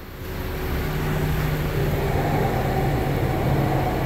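Steady mechanical hum with a rushing noise, swelling over the first second, and a faint steady higher tone joining about two seconds in.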